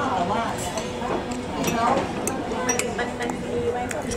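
Cutlery and dishes clinking a few times over the chatter of other diners in a busy café.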